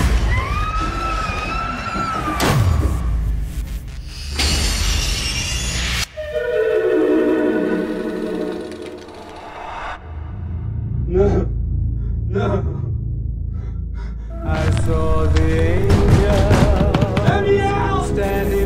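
A woman screaming for about two seconds, then horror-trailer music and sound effects: a falling sweep, a burst of noise that cuts off sharply, and music whose tones slide downward before it swells again near the end.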